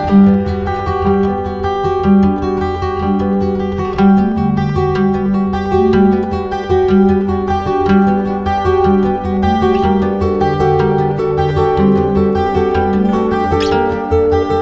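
Instrumental background music led by plucked strings over a steady bass line.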